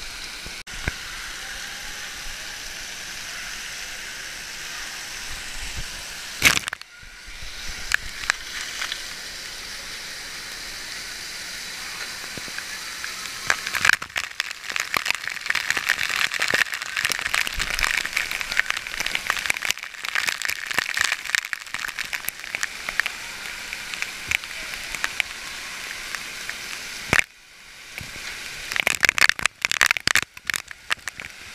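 Water spraying and dripping onto a waterproof action-camera housing: a steady rush of water with dense crackling pops from drops and splashes on the case, busiest in the second half, with a couple of sharp cracks.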